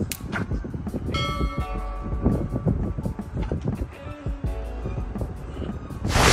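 A sharp click, then about a second later a bright bell ding that rings on and fades, over background music.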